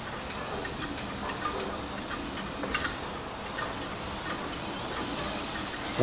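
Pressure hose being wound onto a hand-cranked hose reel: light clicks and rattle from the turning reel and the hose sliding through the hand and guide. A thin, steady high tone joins in for the last two seconds.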